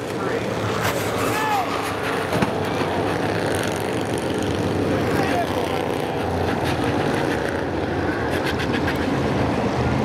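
Bandolero race cars' small single-cylinder engines running around the short oval as a steady drone, with people talking nearby.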